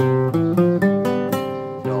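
Nylon-string classical guitar fingerpicked in a run of single notes, a simple Central Highlands (Tây Nguyên)-style melody, each note ringing briefly before the next.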